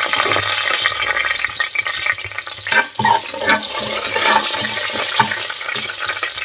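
Whole spices sizzling in hot oil in an aluminium pressure cooker: a steady frying hiss, with a couple of sharp crackles about three seconds in.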